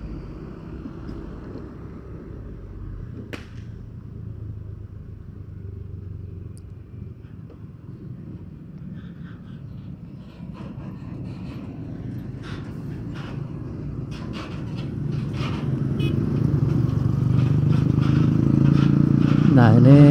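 Low, steady engine and road noise of a motorcycle riding slowly over a rough, slippery dirt road, with scattered small knocks. It grows louder through the second half as it comes among trucks and motorcycles in slow traffic.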